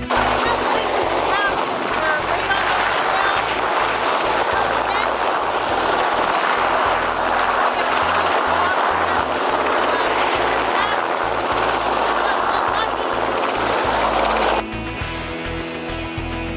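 Search-and-rescue helicopter flying low close by: a loud, steady rushing of rotor and engine noise, with a woman's voice partly buried under it. It cuts off abruptly near the end as background music comes in.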